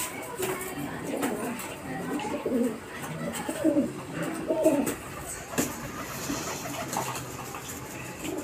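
Rock pigeons cooing over and over in low, bending calls as they fight, with a few sharp wing flaps.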